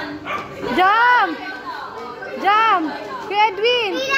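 Four dog-like yelping barks, each rising and then falling in pitch: one about a second in, one past the middle, and two in quick succession near the end.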